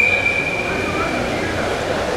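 Referee's whistle blown in one long, steady blast, signalling the restart of the wrestling bout.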